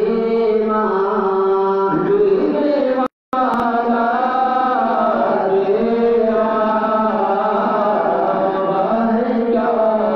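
Men singing a naat, a devotional Urdu poem, into handheld microphones, in long, wavering held notes. The sound cuts out completely for a moment about three seconds in.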